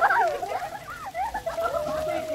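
A group of girls in a swimming pool shouting and squealing together, several high-pitched voices overlapping, with one voice holding a long note in the second half.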